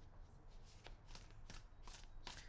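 Faint rustling and soft snaps of a deck of oracle cards being shuffled by hand, in a series of short strokes.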